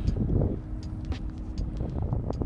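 Wind rumbling on the microphone outdoors over a steady low hum, with a louder gust of rumble in the first half-second and a few light knocks.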